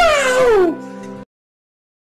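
A loud drawn-out cry that slides down in pitch, over background music holding steady notes. Everything cuts off suddenly just over a second in.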